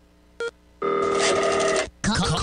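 Telephone ringing sound effect: a single ring of about a second, steady and trilling, that stops sharply. A short beep comes just before it, about half a second in.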